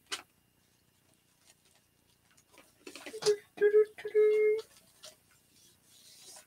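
Hands working a mesh wreath and its wire frame: a few light clicks and faint rustling, with a short two-part hummed "mm-hm" about halfway through; otherwise quiet.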